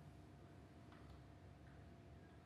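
Near silence: quiet room tone just after a soft, low held clarinet note cuts off at the very start, with two faint clicks about a second in.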